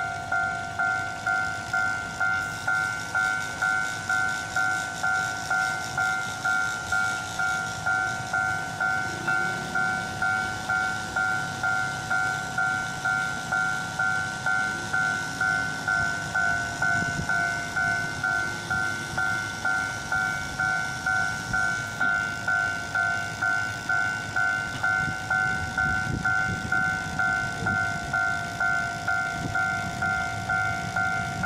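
Railway level-crossing warning bell ringing in a steady, evenly spaced two-tone ding, about one and a half strikes a second, signalling that a train is approaching and the barriers are down.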